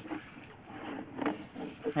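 Faint, steady background noise in a pause between a man's words, with his voice starting up again at the very end.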